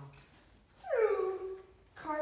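A dog gives a single whine that falls in pitch, about a second in and lasting under a second.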